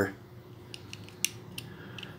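A few small sharp clicks, the loudest about the middle, as a wooden toothpick is worked into the hole in the bed of a 1/64 die-cast toy pickup held in the fingers.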